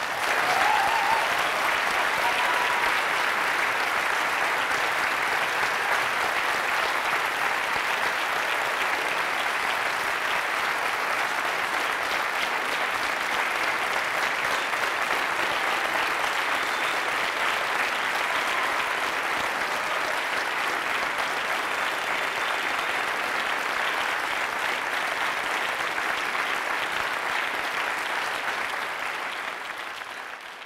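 Audience applauding at the close of a talk: sustained clapping from a large crowd that starts suddenly, holds steady, and tails off near the end.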